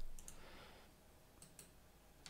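Faint computer mouse clicks: a quick pair near the start and two more about a second and a half in.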